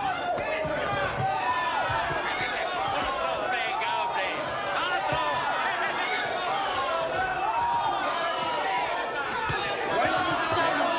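Crowd of spectators shouting and cheering, many voices overlapping, with occasional low thumps.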